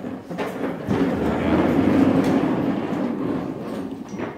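Plastic chairs scraping and shuffling on a tiled floor as a roomful of people stand up together, a dense rumbling clatter that swells about a second in and fades near the end.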